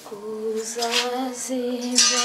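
A voice singing a slow melody in long, held notes, with music.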